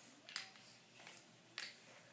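A few light clicks, two of them sharper and about a second apart: Skittles candies dropping into a plastic Lego-brick dispenser.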